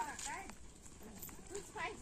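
Faint chatter of several women's voices a little way off, with a single click about half a second in.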